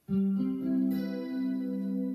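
Electric guitar playing a C major 7 chord in second inversion (G in the bass, with C, E and B above) on the middle four strings. The notes come in slightly staggered at the start, then the chord rings out steadily.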